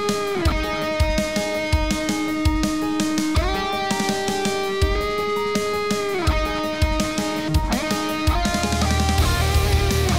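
Electric guitar played through a Marshall combo amp, a melodic lead line of long held notes that slide or bend down and up in pitch, with short low thumps underneath. Near the end a heavy, dense low rhythm comes in.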